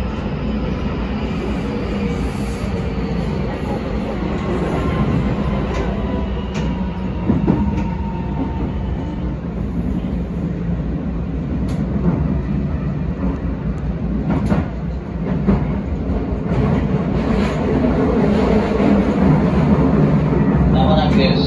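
Keisei 3100-series electric train running, heard from the cab: a steady running rumble with scattered sharp clicks from the wheels over rail joints. A faint falling whine comes through in the first half, and the sound grows a little louder near the end.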